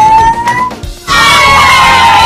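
Children yelling and whooping: one long, slowly rising whoop, then from about a second in a loud burst of a group of kids shouting and cheering together, with music playing underneath.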